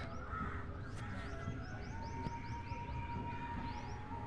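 Faint bird chirping in the background: a run of short, high, rising chirps repeated several times a second, joined about halfway by a faint steady tone.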